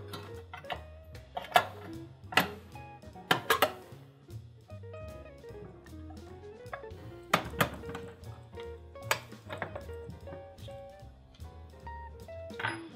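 Soft background guitar music, with a handful of sharp metal clicks and knocks as the chrome side cover of an Imperia Restaurant pasta machine is handled and pressed back into place.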